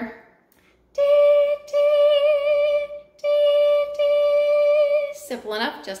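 Recorder playing the same high D four times, tongued in two pairs with a short break between them.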